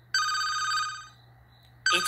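Cell phone ringtone: a steady electronic ring of several tones lasting about a second and fading out, with a second ring starting near the end.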